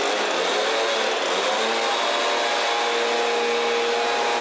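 Stihl backpack mist blower's small two-stroke engine running steadily, with a constant engine note under the rush of air blowing out a disinfectant spray.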